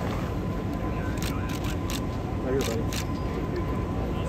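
Camera shutters clicking in short bursts, a few clicks about a second in and again near the three-second mark, over a steady background din with faint voices.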